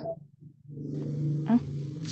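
A person's voice: a long, level hum held for over a second after a brief silence.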